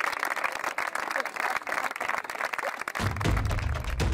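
A group of people applauding with steady, dense hand-clapping. About three seconds in, music with a deep drum beat comes in under the clapping.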